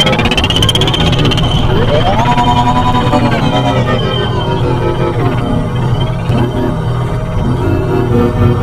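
Electronic sound-design soundscape made with iPad synth and effects apps. A steady low drone runs under synth tones that glide upward in pitch: a high one sweeping up at the start, and a lower one climbing about two seconds in and then holding.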